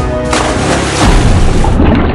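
A person jumping feet-first into a swimming pool: a loud splash rushes in about a third of a second in and lasts about a second and a half, over background music.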